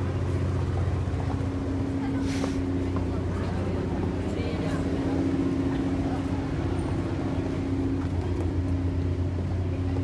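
A motor vehicle engine running steadily with a constant low hum.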